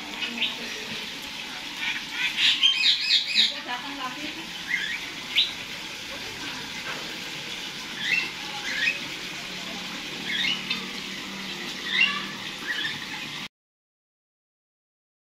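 Caged songbirds in an aviary calling, with short chirps and squawks: a quick run of calls early on, then single calls every second or two. The sound cuts off shortly before the end.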